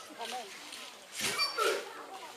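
Dance troupe performers' voices: short shouted calls and yelping cries that bend up and down in pitch, mixed with sharp rushes of rustling noise, loudest about a second and a half in.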